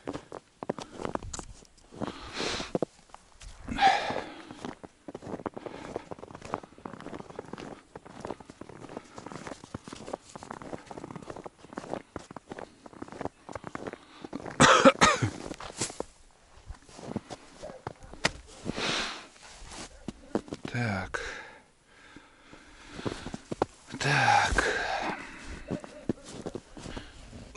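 Footsteps crunching in snow, broken by several loud, short breathy sounds, the loudest about halfway through and another near the end.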